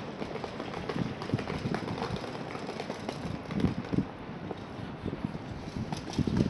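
Wind rumbling on the microphone of a handheld camera being carried while walking, with irregular low bumps and short knocks from handling, over a steady outdoor hiss.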